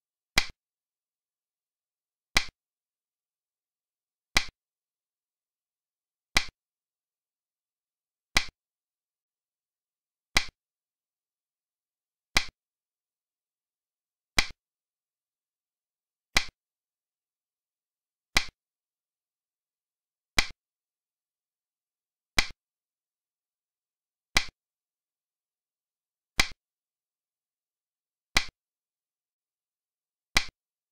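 Digital Chinese chess (xiangqi) piece-move sound effect: a short, sharp click every two seconds, one for each move played on the board.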